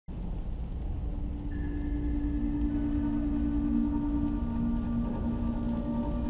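Dark ambient intro music: a deep, steady rumble with sustained low drone tones that come in one after another over the first few seconds.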